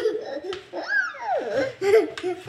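A toddler giggling and laughing, with a high squeal that falls in pitch about a second in.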